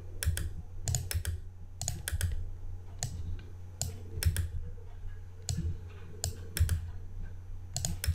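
Computer mouse clicks and key presses as small shape pieces are selected and deleted one at a time: a steady run of sharp clicks, several in quick pairs, over a low steady hum.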